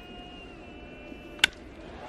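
Crack of a wooden baseball bat squarely hitting a pitched ball, one sharp report about a second and a half in, the contact of a home-run swing. Under it, faint steady ballpark crowd noise.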